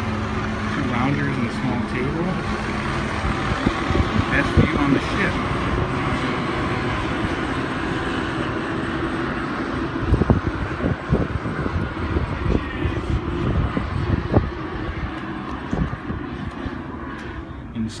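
Open-air ambience on a ship's balcony: a steady rushing noise over a low hum, with a scatter of knocks in the second half. The noise falls away sharply near the end.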